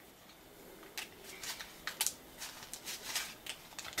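Paper dollar bills being unfolded and handled, a string of short crinkles and rustles starting about a second in.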